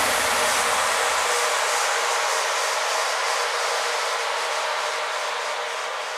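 A steady rushing hiss with no low end, slowly fading.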